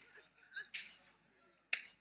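A mostly quiet room with a few faint voice sounds, then a single sharp click a little before the end.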